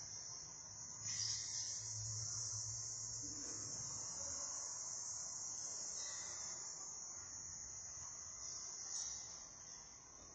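Quiet room tone in a large church: a faint, steady high-pitched hiss over a low rumble, with no distinct events.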